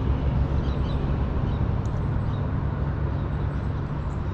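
Heavy breathing close to the microphone from someone who is sick, over a steady low rumble.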